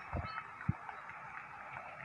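Steady outdoor background hiss with two soft, low thumps in the first second.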